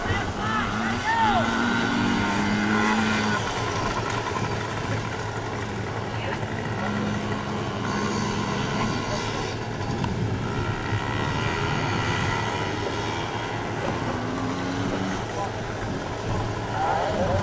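Small youth dirt bikes running around a dirt flat track, their engines buzzing continuously as they come and go.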